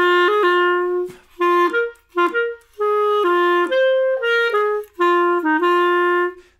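Clarinet playing a short swung jazz-waltz phrase: a long first note, then a string of shorter notes with brief breaks between them. The first quaver of the bar is held a little long to help the swing.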